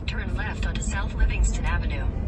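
Steady low rumble of car road and engine noise inside a moving car's cabin, under a man's speech.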